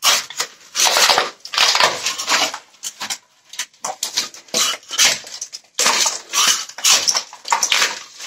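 An old hand saw being levered and scraped under glued polystyrene foam insulation, cut into strips together with its mesh and putty, to tear it off a wall: a run of irregular scraping strokes, each under a second, with short pauses between.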